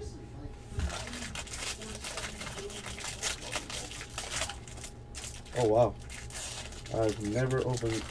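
Plastic wrapper of a trading-card pack crinkling as it is handled and worked open. A man's voice sounds twice in the second half, the first time loudest.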